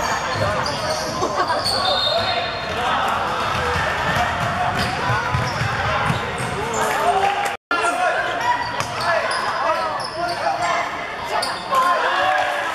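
Basketball game in an echoing sports hall: the ball bouncing on the hardwood court amid boys' and onlookers' shouts and chatter. The sound cuts out for an instant about two-thirds of the way through.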